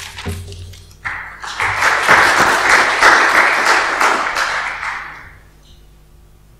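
Audience applauding: the clapping starts about a second in, swells, then dies away near the end.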